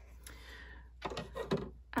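Scissors, paper and a thin metal die being set down and slid on a tabletop by hand: a soft rustle, then a few light taps and knocks in the second half.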